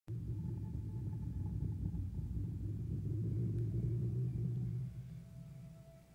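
A low, steady rumbling drone of a horror-trailer soundtrack. It fades out about five seconds in as a faint, single high held tone comes in.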